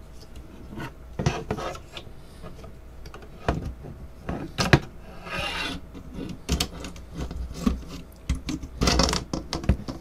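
Metal hive tool scraping and twisting along the seam of a two-piece plastic Apimaye Pro beehive frame, with sharp plastic clicks and snaps at scattered moments as the snapped-together halves pop apart.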